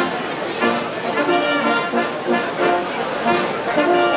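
Brass band playing a tune outdoors, a run of short held brass notes changing in a steady rhythm.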